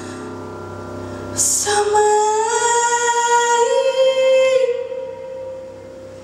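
A woman sings with piano accompaniment. About a second and a half in she takes a breath and starts a long held note that steps up in pitch twice, then fades, leaving quieter accompaniment near the end.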